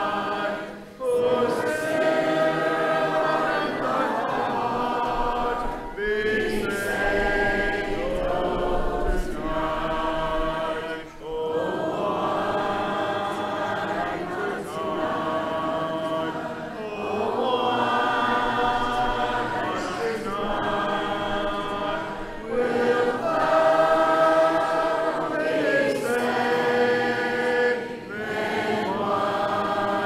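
Congregation singing an invitation hymn a cappella, many voices together with no instruments, in phrases of a few seconds each with short breaks between the lines.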